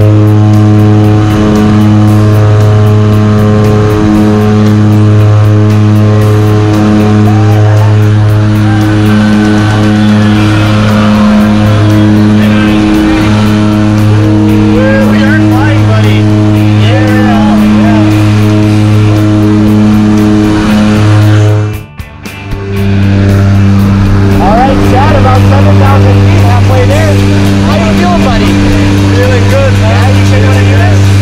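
Cabin noise of a turboprop jump plane: a loud, steady propeller drone that swells and fades every couple of seconds. Voices are raised over it. The sound drops out briefly about two-thirds of the way through.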